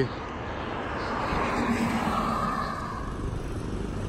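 A vehicle passing on the road alongside, its tyre and engine noise swelling to a peak about halfway through and then fading.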